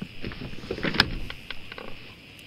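Knocks, clicks and scraping from someone shifting and moving away at a desk, with the sharpest click about a second in, over a steady background chirr of crickets.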